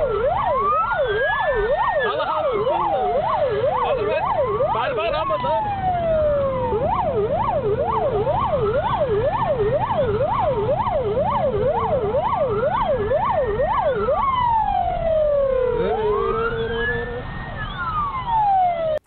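Police patrol car siren heard from inside the pursuing car's cabin: a fast yelp cycling about three times a second, overlaid with a slower wail that rises and falls about every five seconds, over the car's low engine and road rumble. The yelp drops out near the end while the wail carries on.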